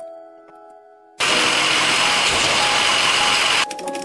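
Soft background music with sparse held notes, broken about a second in by a loud, steady rush of noise that lasts about two and a half seconds and cuts off abruptly, after which the music carries on.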